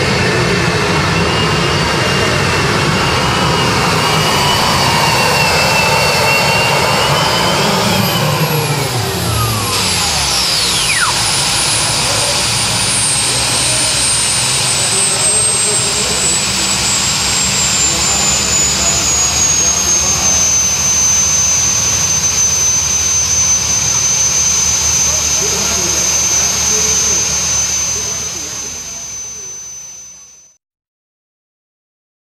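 Modified pulling tractor's turbine engine at full power under load, pitch climbing, then throttled back about eight seconds in. Its high whine winds down over roughly twelve seconds and settles to a steady whine, fading out near the end.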